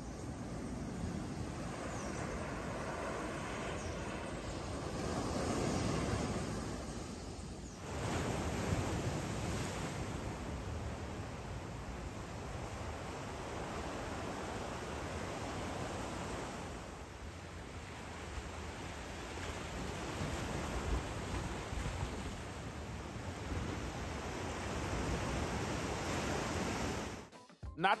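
Surf on a sandy beach: a steady rush of small waves washing in, swelling and ebbing every few seconds, with an abrupt change in the rush about eight seconds in.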